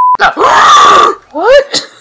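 A steady censor bleep cuts off just as a dubbed voice lets out a loud, strained shout lasting about a second, followed by a brief voiced exclamation.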